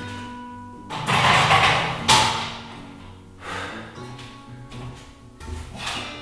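Background acoustic guitar music throughout. About a second in, a weight plate is slid onto the barbell: a loud second of noise that ends in a sharp clank.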